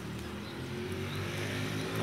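A motor vehicle's engine running with a steady low hum, gradually getting louder.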